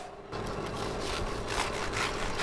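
A knife sawing through a crisp baked choux pastry ring, repeated rasping strokes about three a second. Under it, a steady low hum from a stand mixer whipping cream.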